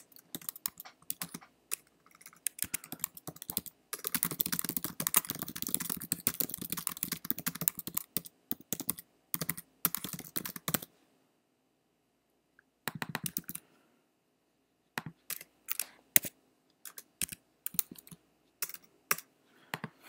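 Typing on a computer keyboard: scattered keystrokes, then a fast run of typing for about four seconds and another shorter run. After a pause come a short burst and a few separate key taps near the end.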